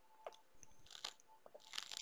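Faint sipping through a straw from a plastic cup, with a few small clicks and two short noisy slurps, one about a second in and one near the end.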